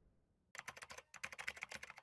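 Computer-keyboard typing sound effect: quick runs of light key clicks starting about half a second in, with short breaks between the runs, as text is typed onto a title card.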